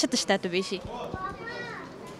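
Speech: a woman's voice finishing a question, then fainter voices in the background.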